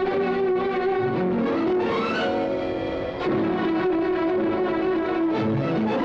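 Orchestral instrumental music from a 1970s Bollywood film song, playing held notes, with a rising run about two seconds in and another near the end.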